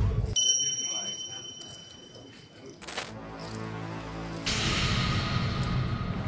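Edited-in sound effects and background music: a long, steady high ringing tone, a sharp hit about halfway through, then background music that swells about a second later.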